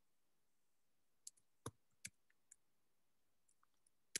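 A few isolated computer keyboard keystrokes, faint and sharp, clustered a little over a second in, then a couple of fainter taps near the end, with near silence between.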